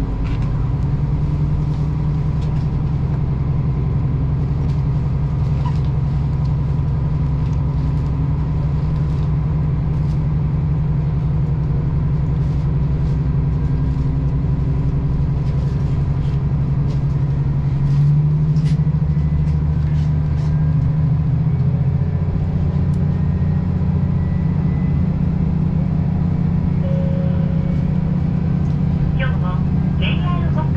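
Diesel railcar engine running, heard from inside the passenger car: a steady low hum that grows louder about eighteen seconds in and changes pitch a few seconds later as the train pulls out of the station.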